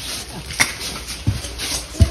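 Footsteps of someone walking, a sharp step every half second or so, over a low steady rumble.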